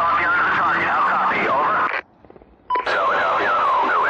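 Military radio chatter: a voice over a radio net reading out a close-air-support brief. Transmission drops out for under a second about halfway, then a short beep and the voice resumes.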